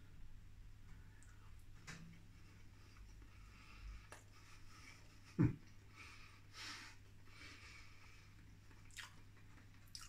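Faint chewing of a mouthful of oven chips, with soft small mouth noises. One short spoken sound breaks in about halfway through.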